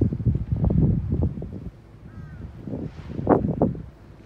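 Wind gusting on the microphone, strongest in the first second and a half. A faint short chirp comes about two seconds in, and a brief louder sound about three seconds in.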